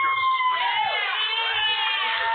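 A crowd cheering and whooping, with several drawn-out high calls overlapping.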